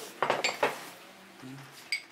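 Small ceramic side-dish bowls being set down on a table, a few sharp clinks in the first second.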